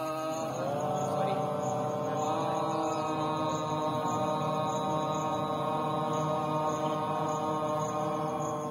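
A long chanted Om, one unbroken syllable held on a steady pitch after a slight rise about a second in.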